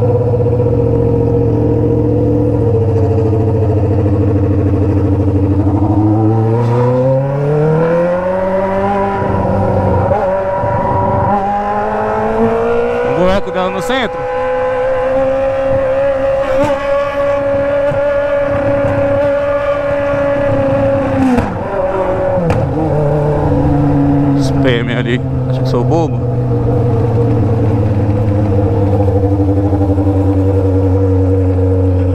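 Honda CB 600F Hornet's inline-four engine through a three-inch straight pipe with no muffler, heard from the rider's seat: running low and steady, revving up over a few seconds as the bike accelerates, holding a higher steady note, then dropping back to a low steady note near the end.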